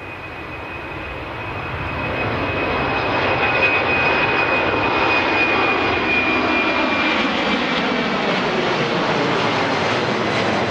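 Boeing 767-300ER's twin turbofan engines at takeoff power as the airliner rolls down the runway, growing louder over the first few seconds, then holding loud with a high whine while the lower engine tones slide downward in pitch as it passes.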